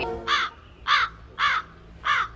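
A crow cawing four times, the caws about half a second apart.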